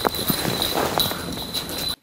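Irregular footsteps on a debris-strewn concrete floor: a search dog setting off at a run, with someone running after it. A faint steady high-pitched tone sits underneath.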